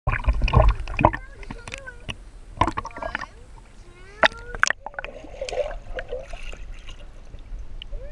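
Pool water splashing and sloshing against a waterproof camera held at the surface, loudest in the first second, with a few sharp knocks as it moves. After about five seconds the sound turns muffled as the camera dips underwater.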